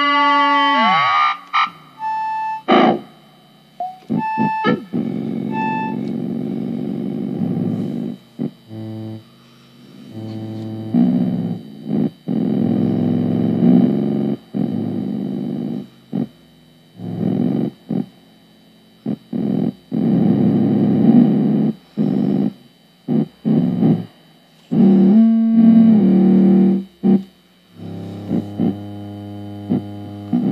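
Ciat-Lonbarde Plumbutter analog synthesizer running a rhythmic feedback patch in which each module clocks the others in a loop. A many-harmonic tone dives in pitch at the start, then short beeps and buzzy low drones cut in and out in irregular, stuttering bursts.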